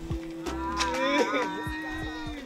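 One long, drawn-out call with a clear pitch, held about two seconds and wavering in pitch near the middle.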